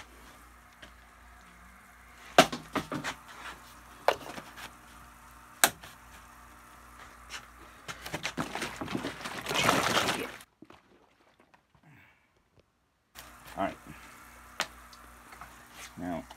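Plastic bottles and containers knocking against a wooden workbench as they are handled and set down, a few sharp knocks, then about two seconds of liquid rushing in a plastic jug that cuts off suddenly, followed by a couple of seconds of dead silence.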